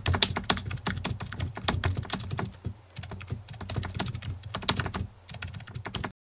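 Computer keyboard typing sound effect: a fast run of key clicks, with a short pause about two and a half seconds in and another near the end.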